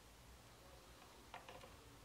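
Near silence, with two faint clicks in quick succession a little over a second in, from a glass test tube being handled in a plastic rack.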